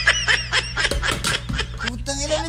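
Rapid, high-pitched snickering laughter with a few sharp clicks, over music.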